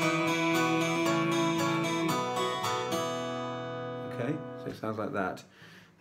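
Twelve-string acoustic guitar fingerpicked with a capo at the third fret, a held sung note over the picking at first. The notes then ring out and fade, and a few soft vocal sounds follow near the end.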